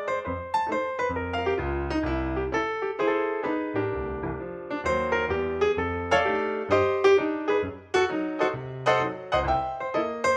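Background piano music: quick runs of struck notes over low bass notes, with no aircraft engine sound heard.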